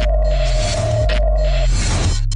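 Electronic logo-sting sound design under an animated logo: a deep bass drone, a steady high ping-like tone that cuts off shortly before the end, and hissing whooshes.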